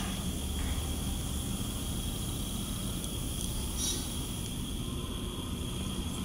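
Dover hydraulic elevator running as its glass cab rises: a steady low hum with hiss and a thin, steady high tone.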